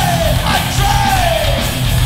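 Live hardcore punk band playing: distorted electric guitars, bass and drums under a vocalist yelling into the microphone, his voice sliding down in pitch through the middle of the phrase.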